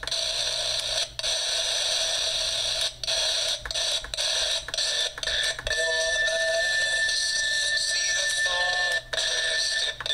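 Radio static hissing from the speaker of a Darth Vader alarm clock radio while it is being tuned. The hiss cuts out briefly several times as the tuning buttons are pressed. About halfway in, a steady high tone and faint traces of a station come through the noise.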